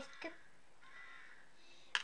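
A child's voice briefly at the start, then faint room noise, with a sharp click just before the end.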